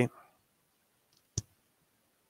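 A single short, sharp click about one and a half seconds in, against an otherwise quiet room; a man's last word just ends as it begins.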